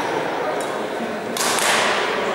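Badminton racket swung hard through the air with a swish and striking the shuttlecock, about one and a half seconds in, after a fainter shuttle hit.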